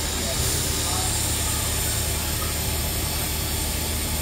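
NSWGR C36 class steam locomotive 3526 standing at the platform, steam hissing steadily from near its cylinders over a steady low engine hum.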